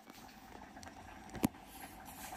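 Faint, steady background noise that slowly grows louder, with a single sharp click about one and a half seconds in.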